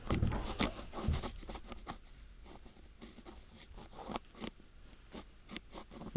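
Close rubbing and rustling handling noise with irregular light clicks and knocks. It is busier and louder for the first two seconds, then quieter and sparser.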